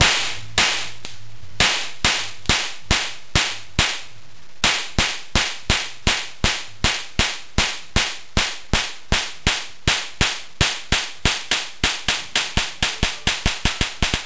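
High-voltage sparks from a home-built plasma spark plug circuit: the charged high-voltage capacitors dump across the spark gap and fire the plug, each discharge a sharp snap. The snaps come a few times a second, speeding up toward the end.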